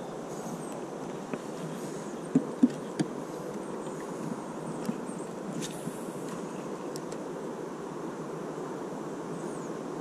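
Steady wind noise on the microphone, with a few sharp clicks from handling the spinning rod and reel, the loudest three coming close together about two and a half to three seconds in.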